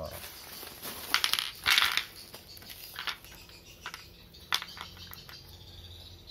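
Plastic packaging crinkling and rustling in a few short bursts as it is handled, loudest about two seconds in, with a few small sharp clicks.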